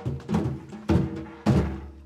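About four strokes on djembe-style hand drums with synthetic heads, two close together and then two more about half a second apart, each with a short low ring. They are struck as a call-and-response drumming exercise: a pattern played to be listened to and then played back.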